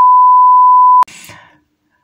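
Loud, steady single-pitch censor bleep edited over a spoken word, cutting off sharply about a second in. A brief trail of a man's voice follows.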